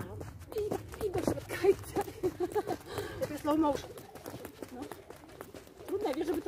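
Thin jump ropes slapping a clay court and shoes landing, making many quick, rhythmic ticks. Quieter voices talk under them for the first few seconds.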